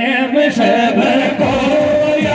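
A man singing a Meena Waati folk song through a microphone and PA, in long held notes that slide between pitches. Low drum beats come in about halfway through.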